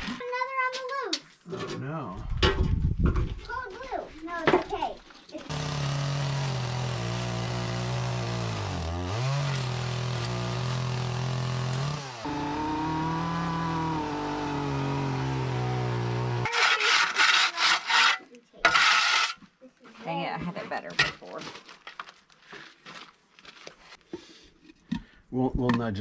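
Chainsaw engine running at high revs for about ten seconds, its pitch dipping as the chain bogs into a log, then a few seconds of harsh cutting noise. Before it come several knocks and handling sounds.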